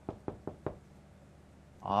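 Four quick knocks on a door, about a fifth of a second apart.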